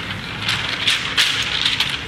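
A large sheet of paper rustling and crackling as it is handled and folded over, in irregular crisp bursts.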